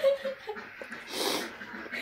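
A duck quacking once, a short rough call about a second in.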